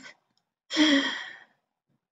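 A woman's short voiced sigh about a second in, breathy and falling slightly in pitch.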